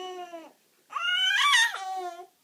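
Baby's happy vocalizing: a short coo, then after a brief pause a longer high-pitched squeal that rises and then falls away.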